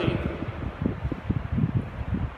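A pause in a man's talk filled with a low, irregular rumble and soft thumps on the microphone, like moving air buffeting it.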